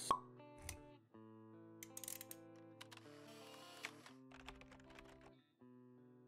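Quiet intro jingle of soft sustained synth notes, opening with one sharp click and dotted with small ticks, with a brief swell of hiss in the middle.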